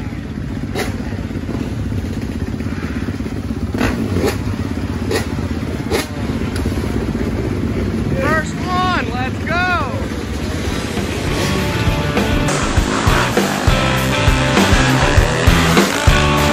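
Dirt bike engine running steadily with a low drone, with a few short knocks and a voice calling out about eight to ten seconds in. From about twelve seconds in, rock music takes over.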